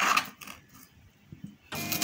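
Kitchen knife slicing through a green bell pepper and striking a plastic cutting board: one loud cut at the start, then a few faint taps.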